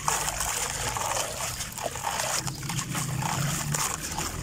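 A block of grainy sand crumbled by hand, dry grains pouring and hissing into a plastic bucket, with small ticks and a few sharper clicks of falling lumps.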